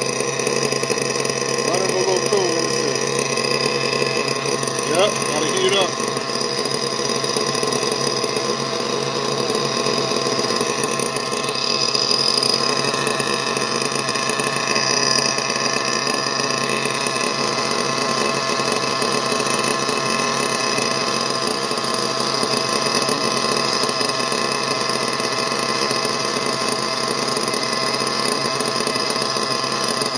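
Two-stroke nitro glow engine of an RC buggy idling steadily on its first run with a new carburetor whose adjustments are untouched.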